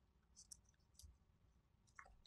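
Near silence: room tone with a few faint short clicks, about half a second in, about a second in, and again at the end.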